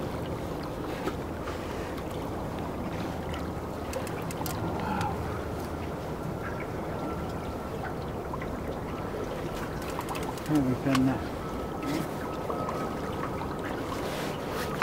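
Steady noise of wind and river water around a small fishing boat, with a faint steady high tone through the second half and a short voice sound about ten and a half seconds in.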